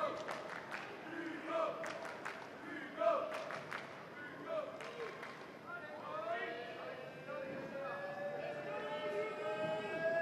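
Tennis rally on a hard court: a string of sharp pops from racket strikes and ball bounces over the first five seconds. Then the crowd's voices swell, rising slowly in reaction as the point ends.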